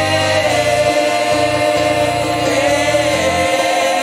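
A gospel praise team singing together into microphones, drawn-out "eh eh eh" notes over a keyboard accompaniment with a low bass line.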